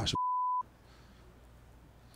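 A single steady censor bleep at 1 kHz, about half a second long, dubbed over a muted stretch of the audio. It is followed by faint room tone.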